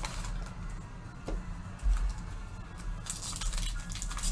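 Foil trading-card pack wrapper crinkling and rustling as hands work it open, the crackle thickest near the end, with a soft bump about two seconds in. A steady low hum or quiet background music runs underneath.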